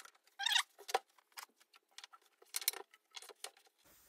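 Light clicks and scrapes of stacked Baltic birch plywood riser blocks being handled and slid into place under the feet of a desktop laser engraver, in a few short scattered clusters.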